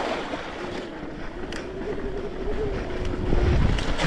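Mountain bike ride noise with wind buffeting the microphone. A faint wavering tone runs through the middle, and a louder low rumble of wind comes in near the end.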